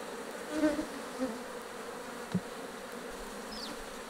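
Steady buzzing hum of an African honeybee colony (Apis mellifera scutellata) from an open Langstroth hive as its frames are lifted out for inspection, with one soft knock a little past halfway.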